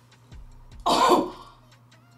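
A woman makes one short, loud throaty vocal sound about a second in, close to a throat clearing.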